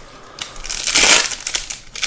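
Foil wrapper of a Panini Select basketball card pack crinkling as it is handled and pulled open, rising to its loudest about a second in.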